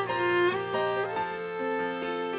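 Violin playing a slow melody, its bowed notes gliding up between pitches, over a keyboard accompaniment whose low notes fade out a little after a second in.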